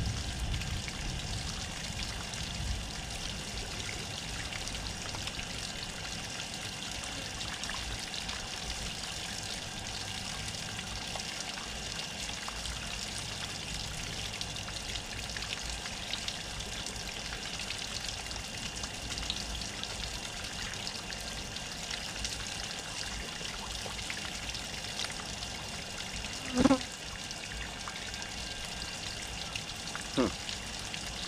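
Water from a garden hose running steadily over a plucked, gutted chicken carcass as it is rinsed. A brief, louder pitched sound cuts in once near the end.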